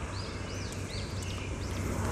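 A small bird chirping faintly, four or five short rising-and-falling chirps, over a low steady background rumble.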